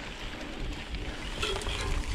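Riding noise of a mountain bike on a grassy track, tyres running through grass, with wind rumble on the camera microphone.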